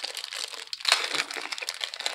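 Foil trading-card pack wrapper crinkling in the hands, a dense run of small crackles.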